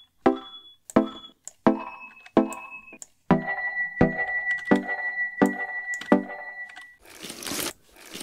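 A short synth melody played through FL Studio's Fruity Convolver reverb, which uses an ice sound-effect sample as its impulse response. Each note starts sharply, and high, glassy ringing tones hang over the notes. A short burst of hiss comes near the end.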